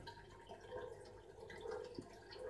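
Water dripping faintly through the perforated drip plate of a homemade glass sump filter into the aquarium below.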